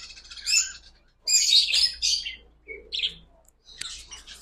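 Caged birds chirping in short, scattered bursts of high chirps, busiest in the middle, with one brief lower call about three seconds in.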